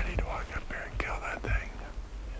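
A hunter whispering, with a few sharp knocks and footsteps in between.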